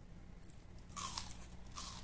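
Two short, crisp crunching bites into raw food, close to the microphone, the second about two-thirds of a second after the first.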